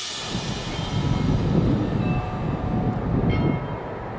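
Street traffic: the low, uneven rumble of a vehicle passing on a city road, with a few faint high-pitched whines.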